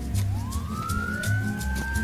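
A police car siren winding up in pitch from about a quarter second in and then holding high, over music with a pulsing bass beat.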